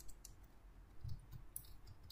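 Faint computer keyboard typing: a handful of scattered key clicks, most of them in the second half.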